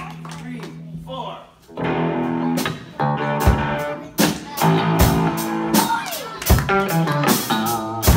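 Live rock band of electric guitars and drum kit: a steady low hum for about the first second and a half, then the band starts a song about two seconds in, with guitar chords and regular drum hits.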